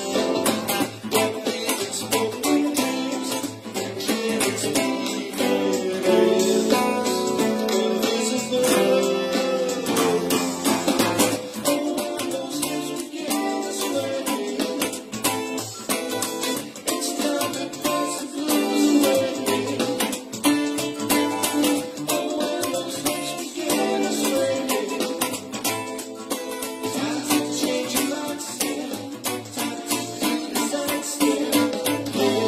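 Electric guitar playing a funk rhythm part along with a funk-soul band recording, over a steady drum beat.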